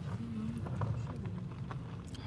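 Low steady rumble of a car heard from inside its cabin, with a few faint clicks and a brief murmured voice near the start.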